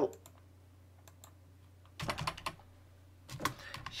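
Computer keyboard keystrokes while editing code: a few scattered taps, then a quick run of key clicks about two seconds in, and more keystrokes near the end.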